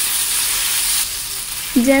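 Thin rice-flour dosa batter sizzling on a hot, oiled non-stick tawa as a ladle spreads it: a steady hiss that softens a little after about a second.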